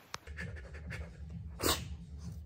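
Small dog panting quickly, with one louder short breathy rush about one and a half seconds in.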